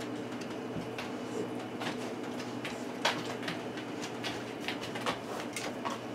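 A glass canning jar of hot broth is lifted out of a pressure canner with a jar lifter and set down on a towelled counter. There are scattered small clicks and a light knock about three seconds in, over a steady low hum.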